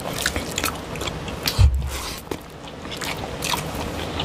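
Close-miked wet squishing and sharp clicking of fingers mixing rice with fish curry on plates. A low thump about a second and a half in is the loudest sound.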